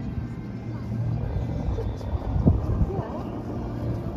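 Distant voices of people talking, over a steady low hum.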